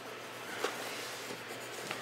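Faint, soft rubbing noise with two light clicks, about half a second in and near the end.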